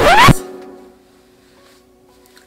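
Intro music ending on a loud, rising whoosh sound effect that sweeps up in pitch for about a third of a second. The music's held notes then fade out over about a second, leaving faint lingering tones.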